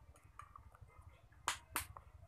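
Two sharp clicks about a quarter of a second apart, as a plastic honey squeeze bottle and a metal spoon are handled, over a faint low room hum.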